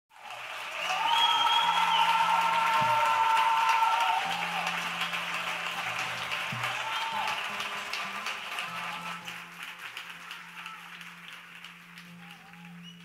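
Audience applauding, loudest in the first few seconds and then dying away.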